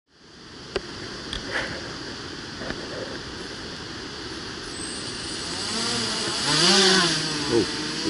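Small electric tricopter's motors and propellers running with a steady high whine, a few sharp clicks in the first two seconds, then throttling up for takeoff: the pitch rises and falls and the sound grows loudest about two-thirds through.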